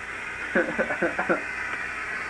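A person's short burst of laughter, several quick voiced pulses about half a second in, lasting under a second.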